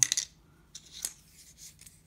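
Small pen parts handled on a paper plan sheet: a brief rustle of paper at the start, then a few light clicks and faint rustling.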